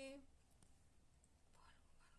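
Near silence: a sung Krishna chant line ends just after the start, followed by faint whispering.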